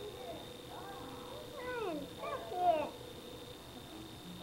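Short wordless high-pitched vocal sounds from a young child, a few quick rising and falling glides between about one and three seconds in.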